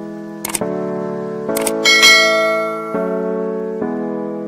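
Background piano music with held chords, over which come sharp mouse-click sound effects, about half a second and a second and a half in, then a bright bell chime about two seconds in that rings and fades: the stock click-and-ding of a subscribe-button animation.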